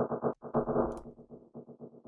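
A sampled loop pitched all the way down in a DAW, playing back as rapid, muffled rhythmic pulsing with only low end and no highs; it breaks off briefly about half a second in, then carries on and fades toward the end.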